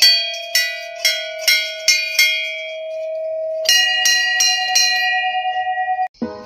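Large brass temple bell rung by hand, its clapper striking about six times in the first two seconds and the bell ringing on. A slightly higher-pitched bell is then struck several times in quick succession from a little past halfway.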